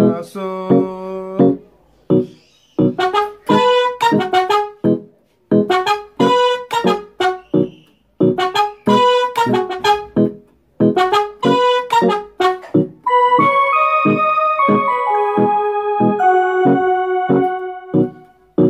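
Keyboard with a piano sound playing a chord progression: short phrases of quickly repeated chords, each broken by a brief pause, then, about two-thirds of the way in, a longer unbroken passage of held, overlapping notes.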